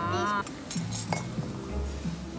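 A few sharp clinks of glassware and cutlery at a dining table, three quick ones around a second in, over background music; a voice is heard at the very start.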